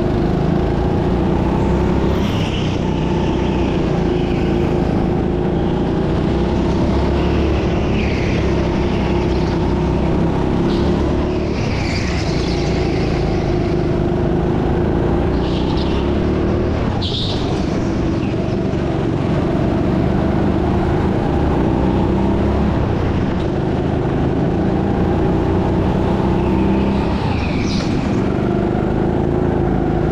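Onboard sound of a rental kart's small petrol engine running at steady throttle as it laps. Short high squeals come several times, from tyres sliding in the corners.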